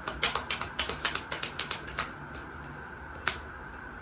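A deck of tarot cards being shuffled by hand: a quick run of crisp card snaps for about two seconds, then a single snap a little after three seconds.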